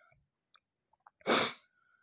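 A single short burst of breath or voice from a person, starting about a second in and lasting under half a second; otherwise near silence.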